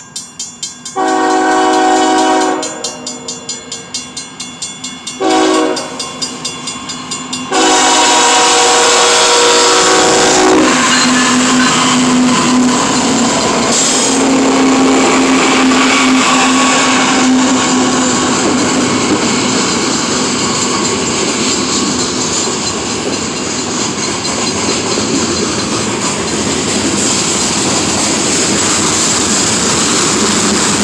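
Grade-crossing bell ringing rapidly while the lead BNSF ES44C4 diesel locomotive's air horn sounds a long blast, a short one, then another long one. Then the locomotives of a freight train pass close by with loud engine rumble, followed by freight cars rolling over the rails with clickety-clack.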